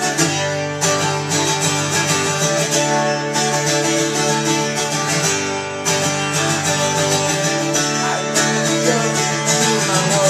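Acoustic guitar strummed in a steady rhythm, playing through a song.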